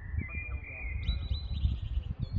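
A songbird singing: a clear whistled note for about a second, then a quick, higher trill. A low, uneven rumble runs underneath.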